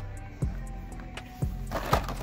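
Background music with a steady beat, and a brief rustling noise near the end.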